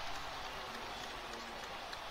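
Low, steady arena crowd noise from the basketball broadcast.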